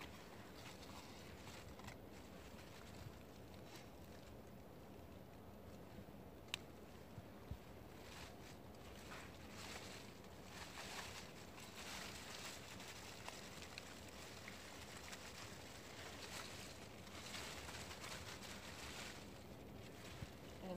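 Faint rustling and scraping of soil and dry plant stalks as Jerusalem artichoke tubers are dug out by hand, coming in uneven bursts, more often in the second half. Two short sharp clicks fall about a third of the way in.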